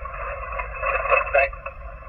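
Yaesu FT-891 HF transceiver receiving single-sideband on 20 metres through its speaker: narrow-band hiss of band noise with a weak, garbled voice from a distant station breaking through.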